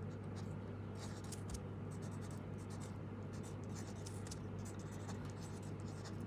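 Pen writing by hand on paper: a run of faint, short scratching strokes as a word is written out, over a steady low hum.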